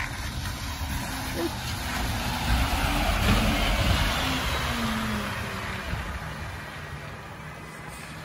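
Alexander Dennis Enviro200 MMC single-deck bus passing by on a wet road. The engine and the hiss of tyres on wet tarmac build to a peak about three to four seconds in, then fade as the bus drives away.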